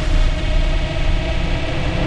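Logo-reveal sound effect: a low, noisy rumble with hiss, dipping slightly in the middle and swelling again near the end.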